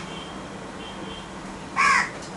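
A crow cawing once near the end, a short harsh call, over a steady low room hum.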